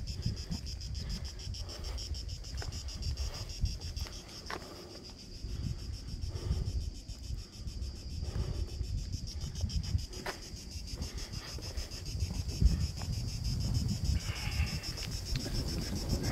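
A steady, high-pitched chorus of insects with a fast, even pulse, over a low rumble of wind on the microphone.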